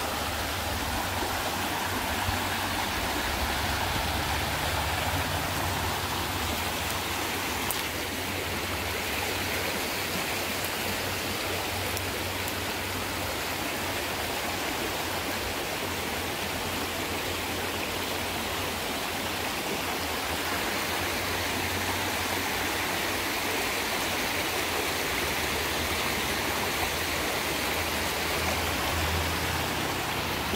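Shallow rocky creek flowing over stones, a steady, unbroken rush of running water.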